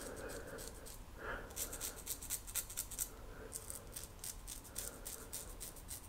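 A 1940s GEM Flip Top G-Bar single-edge safety razor cutting stubble on the upper lip against the grain: faint, rapid crackling scrapes in short runs of strokes, with brief pauses about a second in and again a little after three seconds.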